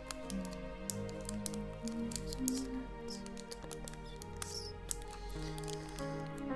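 Slow, soft piano music with held notes, overlaid with many small, crisp clicks and taps scattered irregularly through it.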